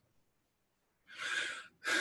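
A man's breathing close to the microphone: silence for about a second, then two audible breaths in quick succession.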